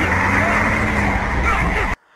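Film action soundtrack of a highway chase: a steady, loud rumble of heavy truck and bus engines and motorcycles with road noise, cutting off suddenly near the end.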